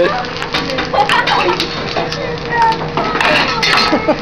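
Metal utensils clinking and tapping on a hibachi steel griddle in quick, irregular clicks, over the chatter of diners.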